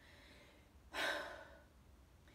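A woman's single heavy sigh about a second in, a breathy exhale that tapers off; she is winded from arm exercises.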